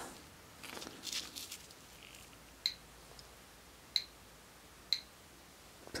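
Soft rustling of a gloved hand turning a stone on a concrete floor, then three isolated sharp clicks about a second apart.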